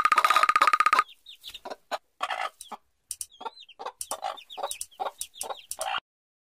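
Chicken sounds: a hen clucking in short, irregular calls mixed with chicks peeping in high, sliding cheeps, starting about a second in. Before that, a rapid pulsing buzz with a steady tone cuts off.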